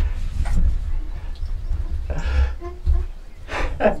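Men laughing in short breathy bursts and exhaling hard, with a little voiced chuckling near the end, over a steady low rumble.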